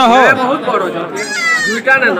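A lamb bleating once, a wavering cry about a second in, amid men's voices.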